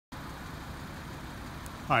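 Steady low rumble of a car engine idling. A man's voice starts right at the end.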